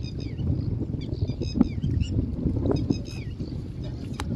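Wind rumbling on the microphone, with a small bird's short, falling chirps repeating in little groups every second or two.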